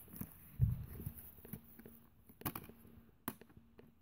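Faint handling noise: a soft thump about half a second in, then a few small scattered clicks.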